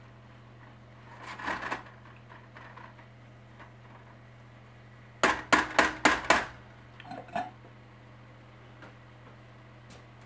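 A measuring cup knocked against the rim of a stainless steel pot, about six quick sharp taps in a row past the middle and one more a moment later, shaking minced shallots out onto the mushrooms. Early on there is a softer scrape of the cup over the pot, all over a steady low hum.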